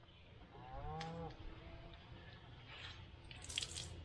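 Soaked work gloves being wrung out by hand: water splattering and dripping onto concrete in a few short faint bursts near the end.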